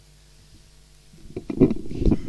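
Microphone handling noise. A faint steady hum, then from about a second in a run of loud, irregular low knocks and rubbing on the microphone.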